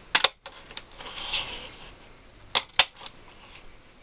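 A Stampin' Up! Word Window paper punch cutting through cardstock, each press giving a sharp click: one just after the start and two close together about two and a half seconds in.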